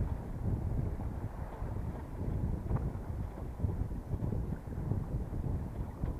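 Wind buffeting the microphone aboard a small sailboat under sail: a low, uneven rumble that rises and falls with the gusts.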